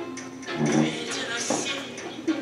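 A girl singing into a handheld microphone over recorded music, with a held note about half a second in.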